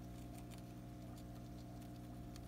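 Hamster nibbling a piece of plum: faint, irregular small clicks of chewing over a steady low hum.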